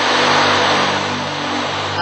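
Ocean drum tilted back and forth, the beads inside rolling across the head in a steady surf-like wash, over soft background music.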